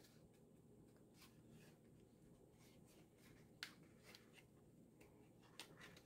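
Near silence, with a few faint taps and rustles of hands handling and pressing glued cardstock panels together; the sharpest tap comes a little past halfway.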